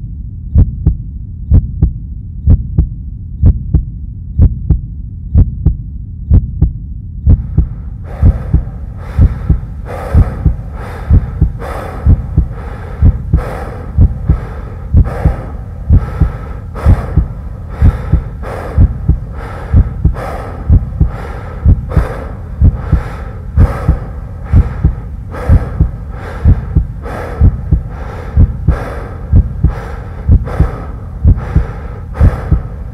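Heartbeat sound effect: steady, regular low thumps, about one and a half a second. A higher ringing hum joins in about eight seconds in.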